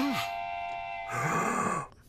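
A held chord of several steady tones fades out about a second and a half in. Near the end it overlaps a low groaning voice with a breathy hiss.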